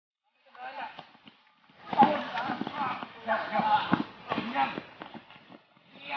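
Several men shouting and yelling over one another in short, loud outcries, as during a chase and scuffle, with no clear words.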